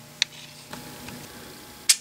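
Quiet shop room tone with a faint low hum, broken by a sharp click about a quarter second in, a fainter tick soon after, and another sharp click just before the end.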